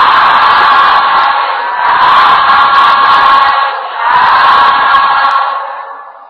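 A group of Buddhist monks calling out "sadhu" together three times, each call drawn out for a second and a half to two seconds: the customary response of approval and rejoicing that closes a dhamma sermon.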